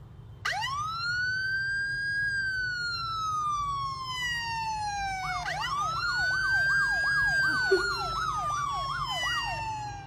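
Recorded police-car siren played through a phone speaker: one long wail rises quickly and falls slowly, then about halfway a second wail starts with rapid yelp sweeps running over it. It stops just before the end.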